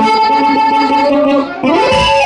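A live band playing a corrido, with held notes. About one and a half seconds in it briefly drops in loudness, then comes back with notes sliding in pitch.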